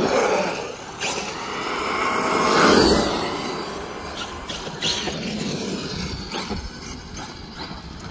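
Traxxas brushless electric RC monster truck driving on pavement: tyre noise and motor whine rise to a close pass about three seconds in, then fade. A few sharp knocks are heard along the way.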